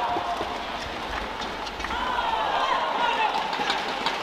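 Badminton rally: sharp racket hits on the shuttlecock and shoes squeaking as players slide and lunge on the court mat, with voices in the hall behind.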